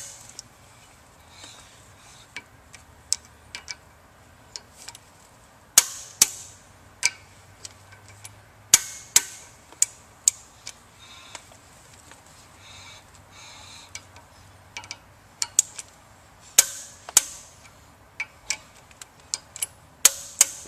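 Torque wrench ratcheting on the steel coupling bolts of a vertical multistage pump's shaft coupling as they are torqued down. It gives irregular sharp clicks, with a few much louder clicks standing out.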